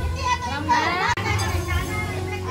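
Children's voices calling and chattering, with music playing in the background.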